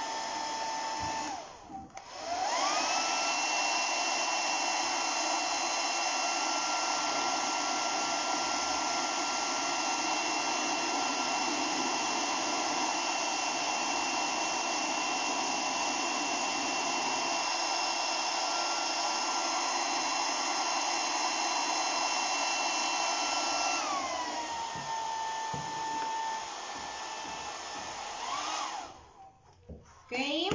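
Handheld hair dryer blowing, a steady whine over rushing air. About two seconds in it cuts out briefly and comes back at a higher speed, its whine rising. About three-quarters through it drops back to the lower, lower-pitched speed and is switched off shortly before the end.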